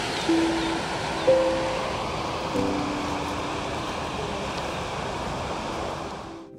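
Steady rush of water pouring out of a dam's outlet, with a few soft notes of background music laid over it.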